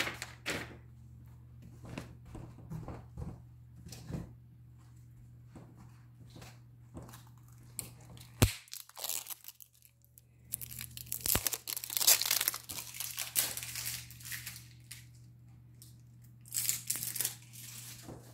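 Crinkling and tearing of packaging as a new roll of painter's tape is unwrapped, in two bursts in the second half, with scattered small taps and a single sharp knock about eight seconds in.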